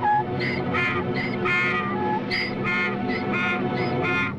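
Donkey braying in a rapid run of strained calls, about three a second, over a sustained low orchestral film score.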